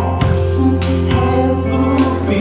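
Live rock band playing: electric guitars over a drum kit, with cymbal hits near the start and at the end.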